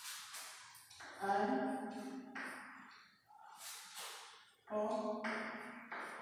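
A woman's voice drawing out two long, steady vowel sounds, each about a second, with short hissing sounds between them.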